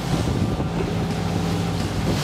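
Outboard motor of a small speedboat running steadily at low speed, a steady low hum under the rush of wind and water, with wind buffeting the microphone.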